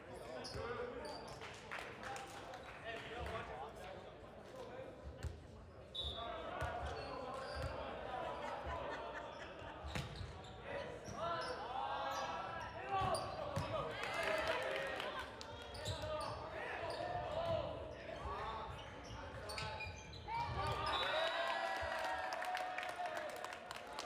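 Indoor volleyball play echoing in a gymnasium: the ball struck and bouncing, with players shouting calls that grow louder from about halfway through. A short whistle sounds about six seconds in.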